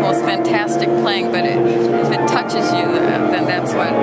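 Live music from an auditioning performer, held pitched notes with a wavering vibrato, echoing in a large hall over the chatter of a crowd.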